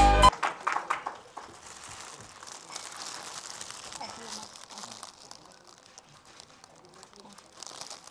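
Clear plastic wrapping of a flower bouquet crinkling as the bouquet is handed over and handled, with a few sharper crackles in the first second and softer rustling after. A burst of music cuts off just after the start.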